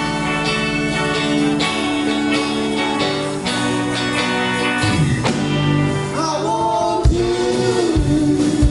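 Live band playing a song: a lead vocal over electric guitar, keyboard and drum kit, with a wavering held melody line about six seconds in and drum hits near the end.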